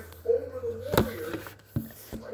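A girl's short wavering hum, then a sharp knock about a second in and a lighter tap shortly before the end.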